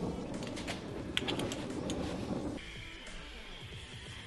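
Freshly lit gas torch flame hissing with some crackle. About two-thirds of the way in, steady background music takes over.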